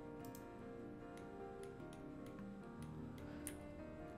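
Soft background music with steady held tones, and a scattering of faint, sharp clicks at irregular intervals from mouse clicks and key presses on a computer.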